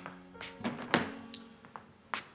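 Soft background score with held tones, broken by several knocks and thuds, the loudest about a second in.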